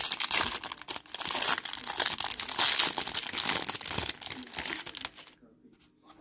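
Thin clear plastic wrapper of a trading-card pack crinkling as the cards are pulled out and handled, a dense crackle that stops about five seconds in.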